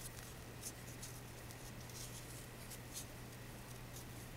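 Faint rustling and light scratching of fingers rolling and pinching ric rac ribbon, a few soft rustles through the stretch, over a steady low hum.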